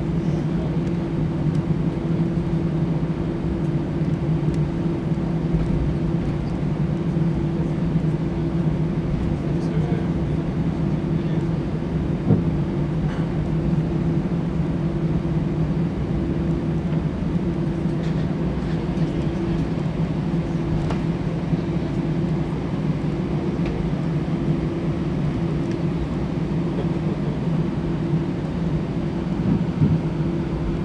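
Steady cabin drone inside an Airbus A320 taxiing, from the engines at taxi power and the cabin air, a low hum holding two level tones. A single short knock comes about twelve seconds in.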